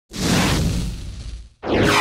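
Intro-animation swoosh sound effects: two loud whooshes, the first fading out over about a second and a half, the second starting near the end with a pitch that sweeps downward.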